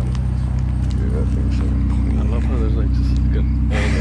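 Steady low hum of a car engine idling, with people talking in the background.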